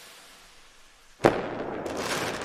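Sound effects of an animated logo intro: a fading hiss, then a sharp burst about a second and a quarter in, followed by a crackling noise that carries on.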